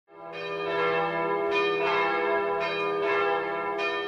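Bells ringing, with a new stroke about once a second, each ringing on over the one before.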